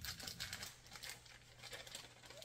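Packet of dry crust mix crinkling as it is handled, a quick run of small crackles that thins out after about a second.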